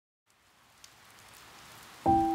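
Faint rain-like hiss with a few soft crackles. It fades in from silence and slowly grows louder, as the opening texture of a pop song's recording.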